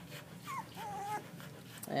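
Young puppy giving a short high whimper during rough play with its littermates: a brief falling cry that settles into a held whine for about half a second.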